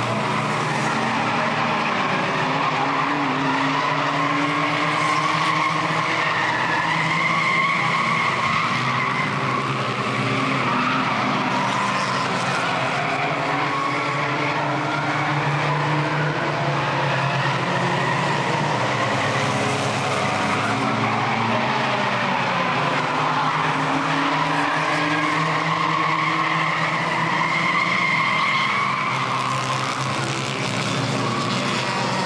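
Small front-wheel-drive compact race cars running laps on a paved oval, their engines rising and falling in pitch as they pass, with tyres squealing at times in the turns.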